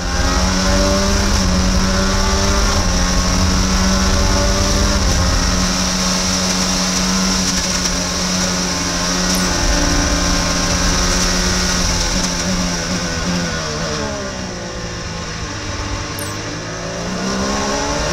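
Onboard sound of an IndyCar's Honda 2.2-litre twin-turbo V6 pulling hard at high revs down a straight. About thirteen seconds in, the pitch steps down through a run of downshifts as the car brakes for a corner, then rises again near the end as it accelerates out.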